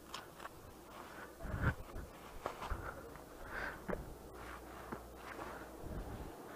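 Quiet, with faint rustles and a few soft knocks over a low steady hum.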